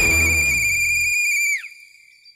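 A whistle blown in one long, steady, shrill blast with a slight warble, lasting about a second and a half before it cuts off. It is blown to call a crowd to attention.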